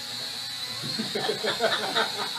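Small indoor drone's propellers whining steadily at a high pitch, called way too loud. From about a second in, people laugh over it.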